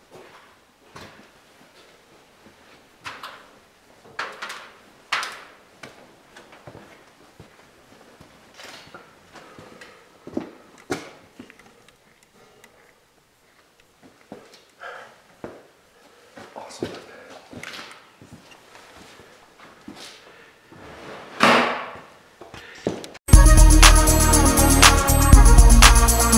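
Scattered short knocks, clicks and scuffs at irregular intervals in a quiet, echoing space, with no machine running. About a second before the end, loud music with a steady beat cuts in suddenly.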